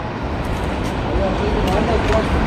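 Steady road-traffic noise, a continuous low rumble with faint voices of passers-by mixed in.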